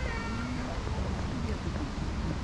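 Outdoor walking ambience: a steady low rumble of wind on the microphone, faint voices of passers-by, and a brief high-pitched squeal right at the start.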